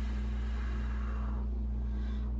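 A steady low hum with several fixed tones, plus a faint hiss in the first second and a half.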